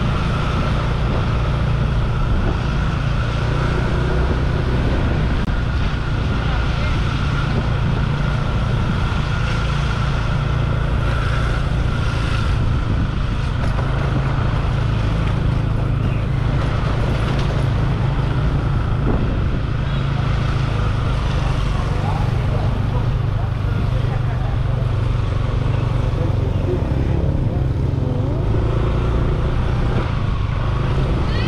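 Motorbike engine running steadily while riding, a constant low drone with road noise.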